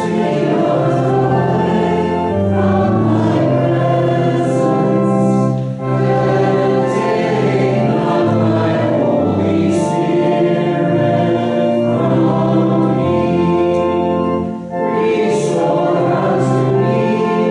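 A congregation singing a hymn together over a sustained low accompaniment, in long held lines with short breaks between phrases about six and fifteen seconds in.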